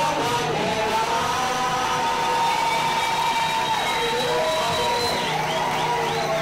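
Live worship band with the congregation singing along, voices holding long sustained notes over the band.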